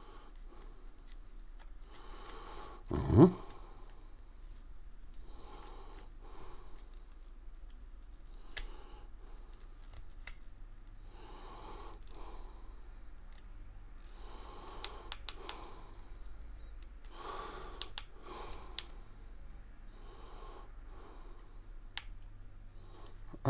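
Close breathing, soft breaths every two to three seconds, with a few small sharp clicks of the handheld gimbal being handled. A short, louder low thump about three seconds in.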